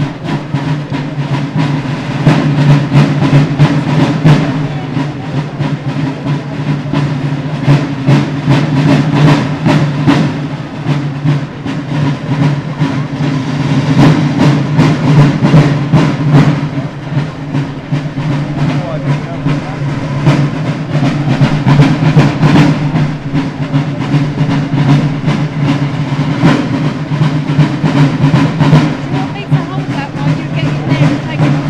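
A group of snare drums playing a fast, continuous rhythm of dense strokes that runs without a break.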